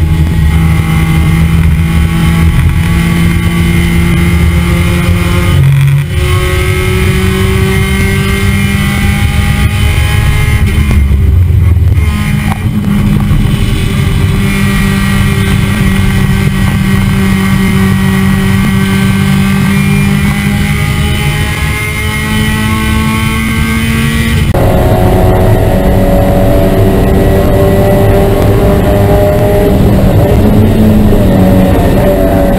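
Mazda Miata race car's four-cylinder engine at high revs, heard from on board, pulling hard with its pitch climbing slowly and dropping sharply a few times, over steady road and wind noise.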